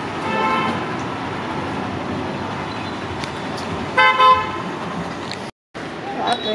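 A horn sounds twice over a steady background noise: a longer toot about a second long at the start, then a short one about four seconds in, each holding one steady pitch.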